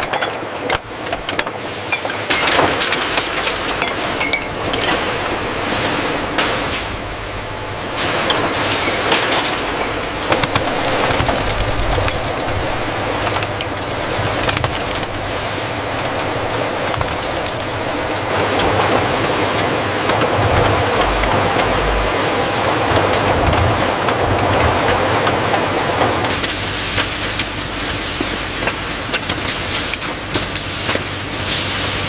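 Bottling-line machinery running steadily: a dense mechanical clatter with many small clicks and knocks throughout.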